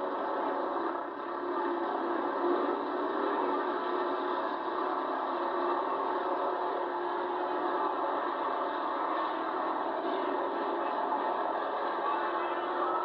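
A pack of pure stock race cars' engines running together at speed around a dirt oval, a steady, unbroken drone heard thinly through a camcorder microphone with little low end.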